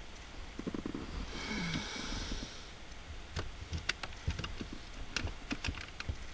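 Plastic center-console trim being handled and worked back into place around the shifter: a brief rubbing sound about a second and a half in, then a run of light, sharp clicks and taps.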